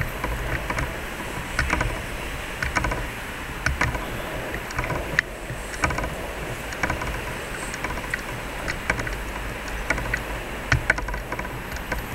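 Footsteps of hard-soled shoes on stone paving, a sharp click about once or twice a second, over a low rumble of wind on the microphone and city noise.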